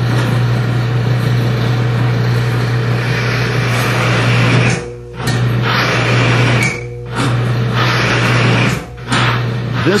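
Cross-axis friction test machine under load: the electric drive motor hums steadily while the pressed test bearing grinds against its race in a loud rushing friction noise, dropping away briefly three times in the second half. The noise is the sign of the resin-based oil additive breaking down under extreme pressure.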